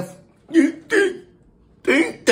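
A man's voice making two short vocal sounds without clear words, about half a second and a second in, between bits of speech.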